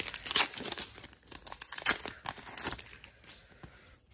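Hands tearing open a hockey card pack and crinkling its wrapper: a busy run of crackling tears and crinkles that thins out and fades near the end.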